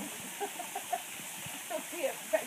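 Steady rushing hiss of falling water from a waterfall, with a few short faint calls in the first second and another near the end.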